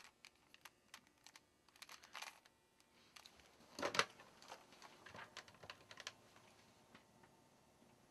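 Faint, quick plastic clicks of a Rubik's-style cube being twisted, then a louder clatter about four seconds in and a few lighter scattered clicks.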